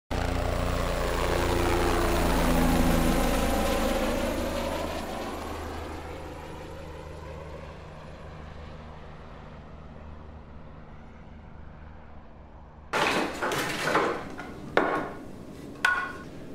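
An aircraft engine passing overhead, loudest a few seconds in and fading away slowly. About thirteen seconds in come several sharp knocks and clatters of wooden pieces being handled on a workbench.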